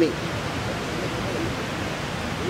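A steady hiss of outdoor background noise in a pause between sentences, with faint speech underneath in about the first second.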